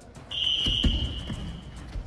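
A single long electronic beep, one steady high tone lasting about a second and a half, typical of a gym's round timer. Under it, a few dull thuds from the grapplers' feet and bodies on the tatami mats.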